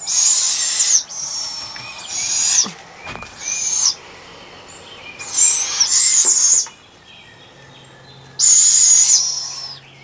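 Owlets giving raspy, hissing screech calls, about six in a row, each up to about a second and a half long with short pauses between: the food-begging calls of hungry young owls.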